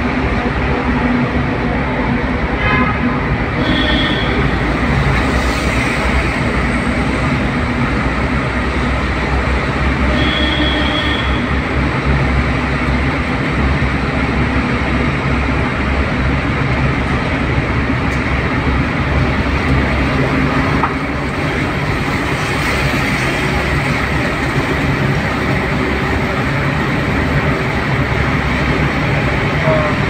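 Steady, loud road and engine noise of a vehicle driving through a road tunnel, heard from inside the cabin. Two brief high tones come through, about four seconds in and again about ten seconds in.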